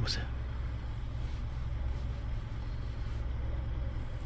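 Steady low hum inside a stationary car's cabin.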